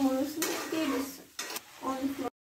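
A spatula scraping and knocking against a wok (kadai) as chilli chicken is stirred, a few strokes about a second apart, with a person's voice alongside.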